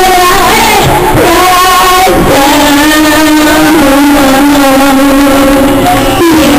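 A woman singing long held notes into a microphone through a PA, with a strummed acoustic guitar accompanying her; the sound is loud throughout.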